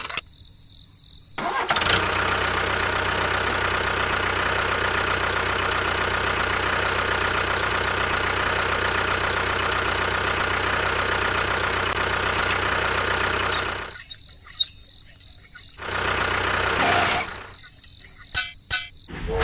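A model tractor's small motor running steadily, starting about a second and a half in and cutting off about 14 seconds in, then running again briefly, with a few clicks near the end.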